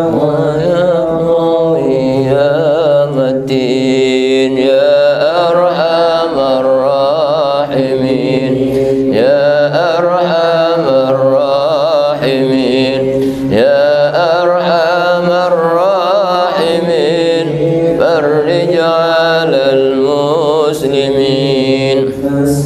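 Background recording of devotional vocal chanting: a sung voice with a wavering, ornamented melody over a steady low drone.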